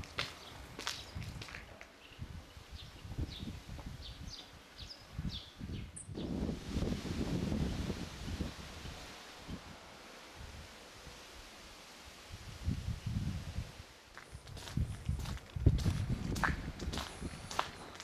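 Footsteps of someone walking on a paved street, irregular steps with low thuds and rumble at times. The sound changes abruptly about six seconds in.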